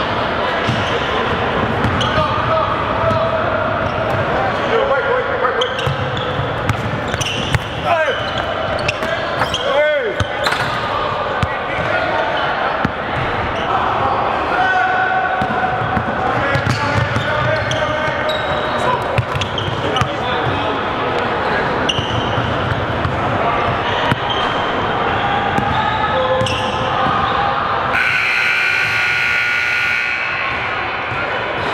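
Basketball scrimmage in a gym: balls bouncing on the hardwood floor under a steady mix of indistinct shouts from players and coaches, echoing around the hall. A couple of short squeaks come through about a third of the way in.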